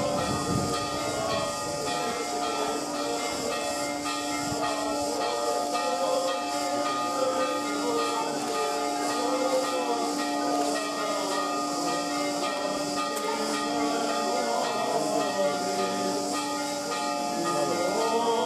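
Byzantine chant sung by the clergy in procession: a held drone note with breaks, under a slowly wavering chanted melody. A steady high hiss runs beneath it all.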